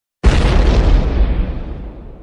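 A deep boom sound effect: a sudden loud hit about a quarter second in, then a rumble that slowly fades away.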